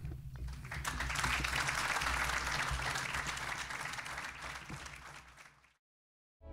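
Audience applauding after the closing words of a speech, building over the first second, then fading away and cut off suddenly near the end.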